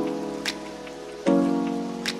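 Lo-fi hip hop beat: a sustained chord dying away slowly, a snare hit about half a second in, and a fresh chord struck about a second later, over a faint steady hiss.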